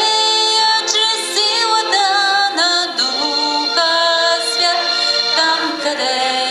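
A woman's voice singing a slow melody in long held notes that slide from one pitch to the next.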